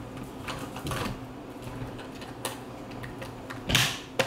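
Plastic DJI Phantom 4 flight battery scraping and clicking as it is slid into the drone's battery bay, with a louder click near the end as it seats.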